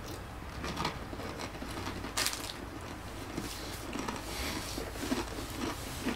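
Quiet chewing of a soft pastry with small clicks and rustles from handling the food, and one sharper click about two seconds in.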